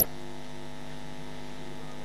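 Steady electrical mains hum in the microphone and recording chain, several low tones held together without change, with one short click right at the start.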